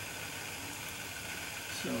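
Steady, even outdoor hiss, with a faint short low tone a little over half a second in.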